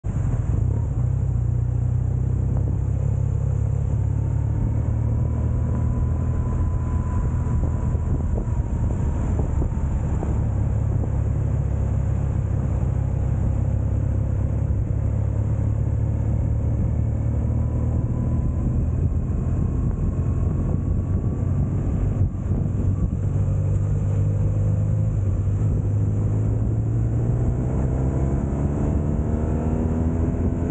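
BMW R1200 GS Rallye's boxer twin engine running under way, with road and wind noise. Over the last few seconds the engine note climbs steadily as the bike accelerates.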